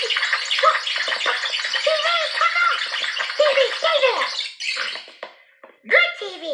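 High-pitched voices chattering and laughing over a steady hiss, with short bending calls that come and go, dropping away briefly just before the end.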